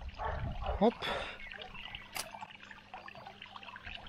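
Pond water sloshing and trickling close by, loudest in the first second. A single sharp click comes about two seconds in.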